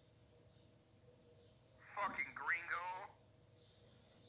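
A person's voice speaking briefly, for about a second in the middle, over a phone or voice-chat line; otherwise faint background with a low steady hum.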